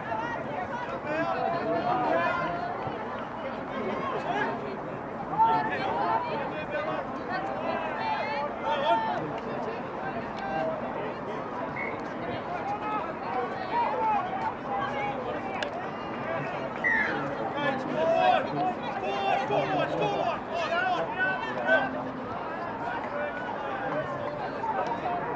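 Overlapping voices of players on a touch football field calling out and chattering to one another, with a few louder shouts.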